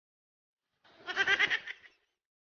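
A woman's high-pitched laugh, a quick run of pulsing, bleat-like 'heh-heh-heh' notes lasting about a second, starting after a moment of dead silence.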